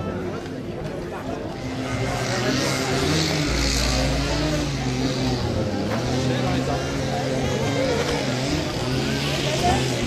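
Indistinct voices of people talking, with a motor vehicle's engine running steadily underneath from about two seconds in, its deep rumble strongest around the middle.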